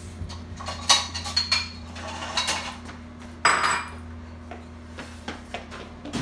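Metal dishes and cutlery clinking and clattering as they are lifted from a dish drying rack and put away, with the loudest clatter about three and a half seconds in.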